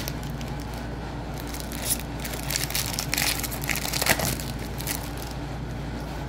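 A foil Pokémon booster pack wrapper being torn open and crinkled, in scattered short bursts of rustling over a steady low hum.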